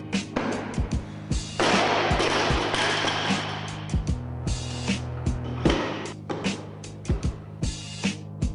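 Background music with a drum beat and sustained tones, with a loud hissing swell a couple of seconds in.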